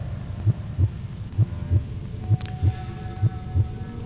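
Low, pulsing suspense music bed: a heartbeat-like beat of about three soft thumps a second, with a faint held synth tone, a brief swish about halfway, and a second held tone after it.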